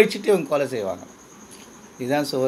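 A man's voice for about the first second, then a pause. A faint, steady, high-pitched insect trill runs in the background throughout.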